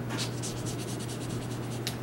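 Pen on paper: a quick run of short writing strokes, as students write in their books, over a steady low hum.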